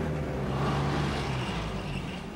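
A vehicle engine running steadily, under held background music notes that fade out near the end.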